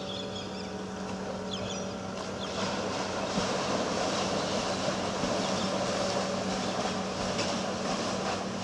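Paddle steamer getting under way: a steady hum from its machinery, joined about two and a half seconds in by a louder rushing, churning noise of the paddle wheels working the water.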